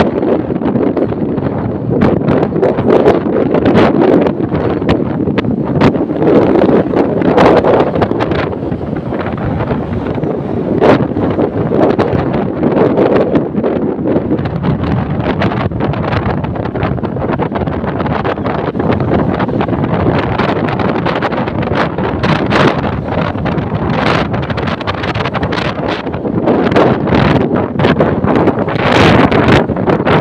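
Wind rushing and buffeting the microphone of a camera carried on a moving vehicle, crackling throughout, with road and vehicle noise underneath.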